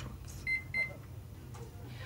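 Two short, high electronic beeps about a third of a second apart, over a low steady hum.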